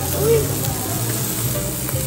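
Pork and chicken sizzling on a Korean barbecue grill plate, with metal tongs turning the pieces and a light click near the end.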